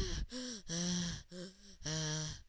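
A person's voice making a string of short gasps and wordless panicky cries in mock distress, two of them held a little longer, one about a second in and one at the end.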